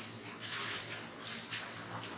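Faint, hissy classroom background of children whispering and moving about during group work, with a few short high-pitched squeaks.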